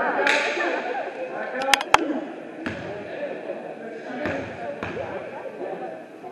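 Basketball bounced on a gym floor, about three bounces in the second half, under a background of voices echoing in the gym. Two sharp clicks come just before the first bounce.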